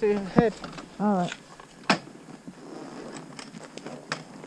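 Two short wordless voice sounds, sliding in pitch, then a loud knock about half a second in, after which the idling motorcycle's low rumble stops. Scattered clicks and light knocks follow.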